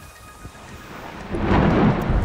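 Storm sound: a quieter start, then a rushing, thunder-like swell of noise that rises sharply about a second and a half in, heralding a sudden rain and windstorm.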